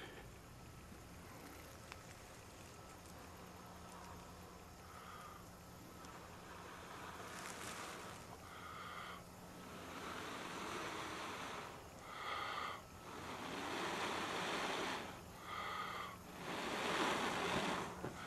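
A person blowing into a tinder bundle to bring a bow-drill coal to flame: a run of long breathy blows, with short sharp breaths between them, starting about six seconds in and growing louder toward the end.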